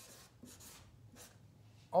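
Felt-tip marker scratching faintly across flip-chart paper in a few short strokes as a word is written. A man's voice starts at the very end.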